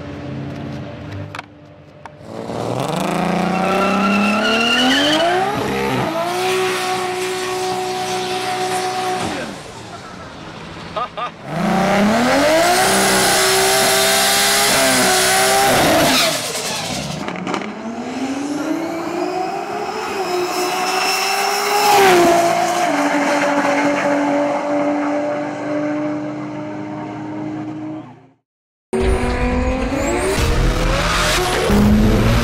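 Turbocharged 2JZ inline-six of a drag-racing Lexus SC300 revving again and again: its pitch climbs, then holds high while the rear tyres spin and squeal in burnouts. The loudest stretch comes midway, a burnout with heavy tyre noise over the engine. The sound cuts off suddenly shortly before the end.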